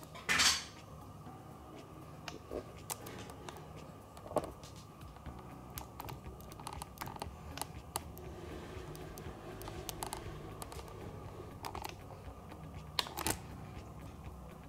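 Scattered light clicks and taps over a faint steady hum, with sharper clicks near the start, about four seconds in and near the end.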